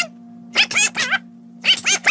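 Squawky Donald Duck-style cartoon duck voices in two short bursts, one about half a second in and one near the end, over a low held note of the background music.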